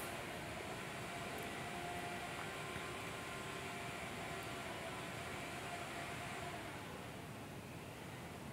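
Steady hiss of a gas stove burner under a pan of simmering curry, without a break and easing slightly near the end.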